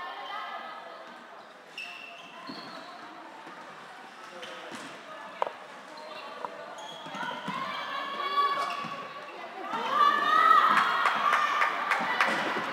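Floorball being played in an echoing sports hall: sharp clacks of sticks striking the plastic ball, the loudest about five and a half seconds in, under voices calling out across the court that grow louder near the end.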